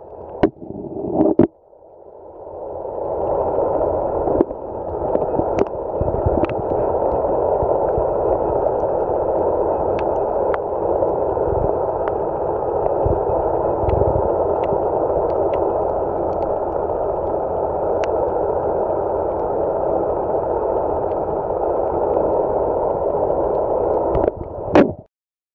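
Steady rushing water noise heard underwater through the camera, building up over the first few seconds and then holding even, with scattered sharp clicks.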